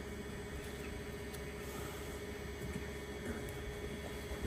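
Faint steady hum over low background noise, with a few light clicks.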